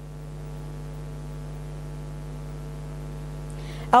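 Steady electrical mains hum, a low buzz with a ladder of even overtones, on a live broadcast audio line, unchanging throughout.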